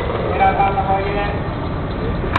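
Skateboard wheels rolling over a hard court surface: a steady low rumble.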